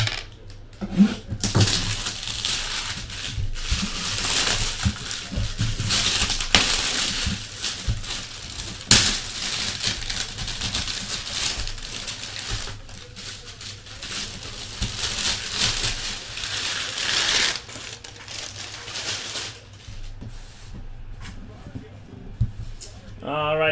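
Cardboard box and its packing being handled and opened: an uneven rustling hiss with a few sharp knocks, dying down about three-quarters of the way through.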